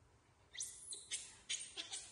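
A baby macaque giving a run of four short, shrill squeals in quick succession, starting about half a second in, the first one rising in pitch.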